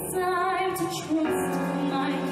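A woman singing a powerful live ballad, holding notes with vibrato over a band accompaniment, moving to a new note about a second in.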